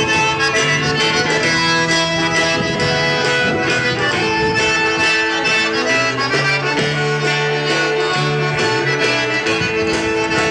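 Live band playing an instrumental tune: long held melody notes over a bass line that steps from note to note.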